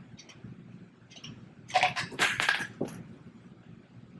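Small loose metal pieces clinking and rattling against each other and a concrete floor, in a quick cluster with a bright metallic ring about two seconds in, as the wheel's lug nuts and tools are handled during a wheel change.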